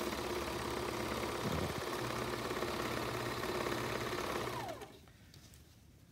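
Serger (overlock sewing machine) running at a steady speed, stitching the side seam of a bag. About four and a half seconds in it slows with a falling pitch and stops.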